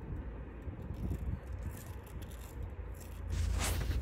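Faint rattles and small clicks from a paramotor frame and its trike mount being handled as it is unclipped, over a steady low wind rumble on the microphone that grows louder near the end.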